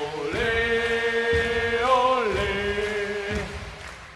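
A football-fan chant sung in long held notes: one note held for about two seconds, then a step down to a lower note that dies away near the end.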